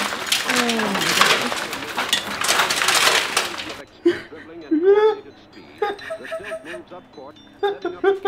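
Shattered safety glass of a van's rear-door window crackling and tinkling as the broken pieces are pulled loose and fall, a dense run of small clinks that stops abruptly about four seconds in. Laughter and talk follow.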